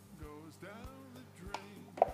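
Quiet background music, with a few soft clicks as the food processor bowl and lid are handled.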